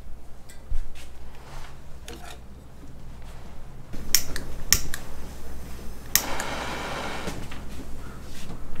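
Clicks and knocks from hands working tools and rope, with three sharper clicks between about four and six seconds in, then a brief hiss lasting about a second.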